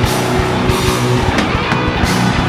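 A live rock band playing loud and heavy: electric guitars and a drum kit, with steady low drum hits and cymbal crashes at the start and again about one and a half seconds in.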